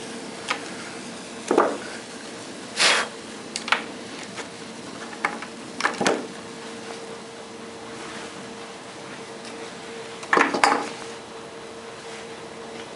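Sharp metallic clicks and clanks of alligator-clip test leads being handled and unclipped from the terminals of a punctured lithium iron phosphate cell, the longest and loudest about three seconds in and a quick cluster near the end. Under them runs a steady faint hiss from the cell as it vents and burns, with a low steady hum.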